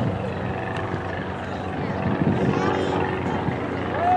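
Soccer match ambience: scattered, indistinct shouts and voices from players and spectators over a steady low rumble.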